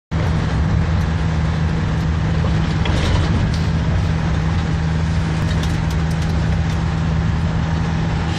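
Car engine and road noise heard from inside the cabin while driving at steady speed: a steady low hum with a few faint ticks.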